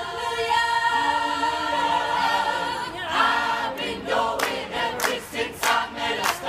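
Mixed choir singing a cappella: a long held chord for about three seconds, then a new phrase, with rhythmic hand-clapping joining in about four seconds in.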